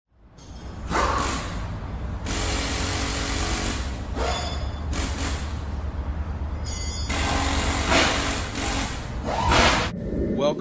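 Power tool running in a series of bursts of one to two seconds each, over a steady low hum.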